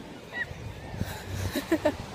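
A woman laughs briefly near the end, after a short high squeak about half a second in.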